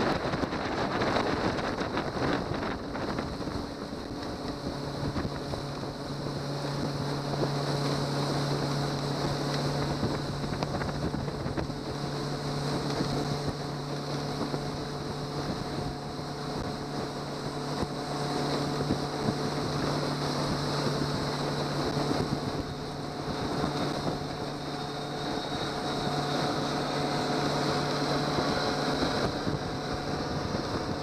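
A 70 hp outboard motor running steadily, pushing the boat at speed, its even hum mixed with the rush of the wake and wind buffeting the microphone. The engine's steady tone becomes clear a few seconds in.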